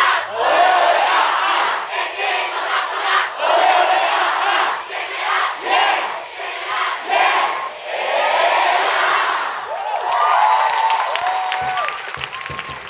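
A large group of students shouting a school cheer in unison, in loud, rhythmic chanted phrases. Near the end the chant gives way to rhythmic hand clapping with a few held shouts.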